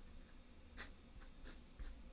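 Faint scratching of a pen on paper: a few short strokes as a number is written and a box is drawn around it.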